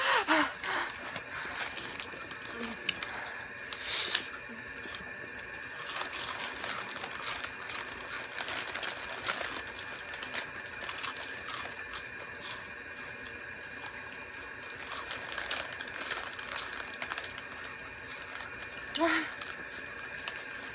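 Hot Cheetos being chewed: scattered faint crunches and clicks over a steady low background hum, with a brief vocal sound near the end.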